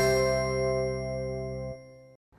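The last chord of a short TV title jingle ringing out: a bright, bell-like chord struck just before, held and slowly fading, dying away near the end.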